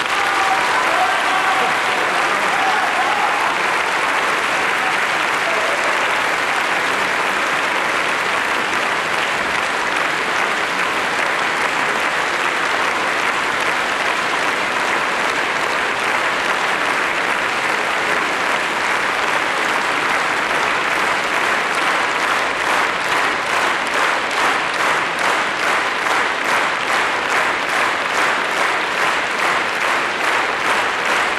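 Audience applauding. Near the end the clapping falls into a steady beat in unison.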